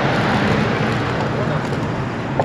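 A car passing close on the adjacent road: a steady rush of tyre and engine noise that swells in the first second and slowly eases off.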